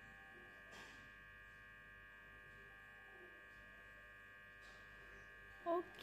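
Very faint, steady electrical whine made of several fixed high tones over a low hum, with a soft tap about a second in and another near the end.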